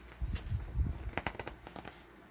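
Handling noise: a quick string of small clicks and taps as a model ship funnel is turned over in the hand.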